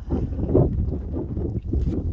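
Wind buffeting the microphone: a gusty low rumble that rises and falls, with a brief click near the end.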